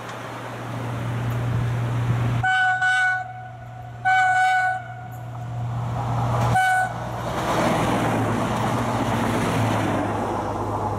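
Horn of a Minuetto regional train giving its greeting: two blasts on one note, each under a second, then a short final toot. After the horn comes the growing rumble of the train passing.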